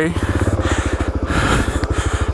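Suzuki DR-Z400S single-cylinder four-stroke engine chugging at low revs with a fast, even pulse.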